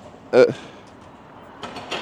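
Speech only: a man's short hesitant "uh" over a steady background hiss of street ambience, with a brief noise near the end.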